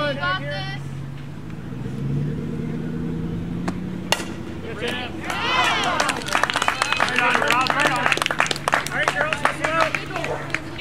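A softball bat cracks against the ball about four seconds in, and moments later players and spectators shout and clap in a quick run of claps. A steady low hum runs underneath.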